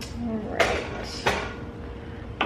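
Kitchen handling noise: two short knocks, a little under a second apart, with a brief murmur of voice near the start.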